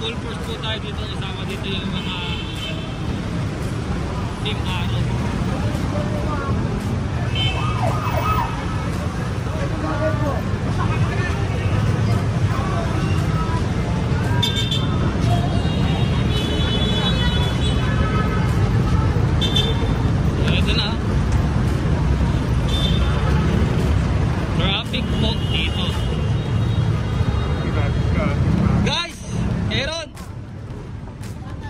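Busy street traffic: vehicle engines, motorcycles among them, running with a steady low rumble, mixed with the voices of people nearby.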